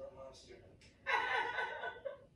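Faint talk, then about a second in a loud burst of laughter lasting about a second.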